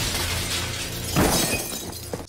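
Window glass shattering as a body crashes through it, the breaking glass running on with a second loud crash just over a second in.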